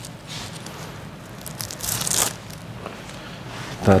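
Rustling handling noise from a small object in the hands, with one louder crinkling scrape lasting under half a second about two seconds in, over a low steady hum.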